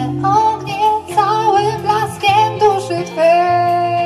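A band playing: electric guitars and keyboard over a steady bass, with a wavering lead melody that settles on a long held note about three seconds in.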